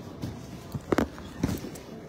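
A few sharp knocks or clicks about a second in and again half a second later, over steady low background noise.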